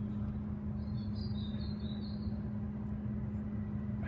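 Steady low background hum outdoors, with a faint bird twittering for about a second near the middle.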